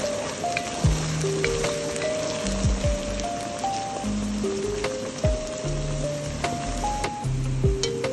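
Background music with a simple stepping melody and a deep beat, over the steady sizzle of chopped okra deep-frying in hot oil.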